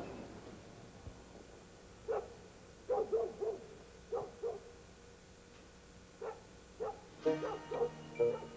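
A dog barking, short single barks and quick pairs or triplets with pauses between, at a low level under a quiet night-time background.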